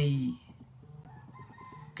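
A man's voice: one short, loud drawn-out syllable at the start, then a quiet pause with only faint background sound.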